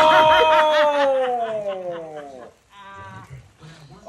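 A person's voice: one long drawn-out exclamation lasting about two and a half seconds, wavering at first and then slowly falling in pitch, followed by a shorter, fainter vocal sound.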